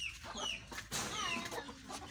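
Birds chirping: a run of short calls that fall in pitch, several a second.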